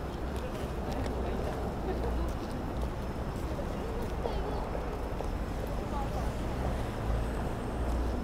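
Night city street ambience: a steady low rumble of traffic with indistinct voices of passersby and faint footsteps.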